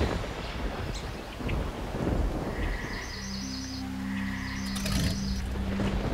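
Commercial soundtrack: music over stormy rain-and-wind ambience, with a low sustained drone coming in about three seconds in.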